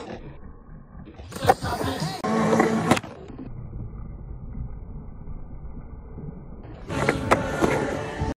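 Skateboard on concrete: wheels rolling, with sharp clacks of the board against a ledge about a second and a half in and again at about three seconds, then louder rolling with more knocks near the end.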